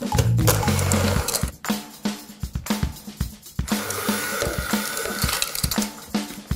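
Electric hand mixer kneading shortcrust dough in a bowl: its motor whirs loudly for the first second and a half and again through the second half, labouring as it works the stiff dough.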